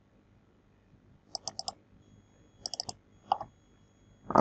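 Quick clicks of a computer keyboard: a run of four about a second and a half in, another four near the three-second mark, then one more.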